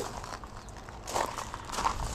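Footsteps on gravel, a few soft steps in the second half.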